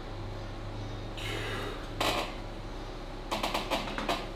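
Two short, sharp breaths from a lifter straining under a 67.5 kg back-pressure wrist lift on a single-pulley cable machine. Near the end comes a quick run of metallic clinks and rattles from the machine's weight plates and cable.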